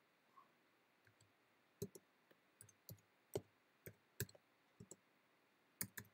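Computer keyboard keys being typed: a dozen or so soft, irregularly spaced key clicks as numbers and commas are entered, starting about a second in.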